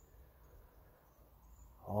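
Quiet open-air ambience: a low, steady rumble with a few faint, short, high-pitched chirps, like insects in the grass.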